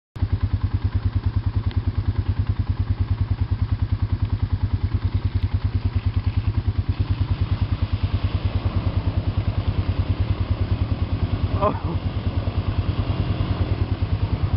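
ATV engine running at low revs with a steady, even chug throughout.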